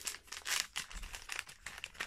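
Wrapping of a gift package being crinkled and torn open by hand: a run of irregular crackles and rustles.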